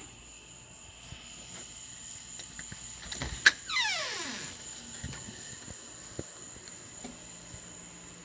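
A door latch clicks, then the door opens with a squeaky hinge: one squeal that slides downward in pitch for about a second. Crickets chirp in a steady high background trill.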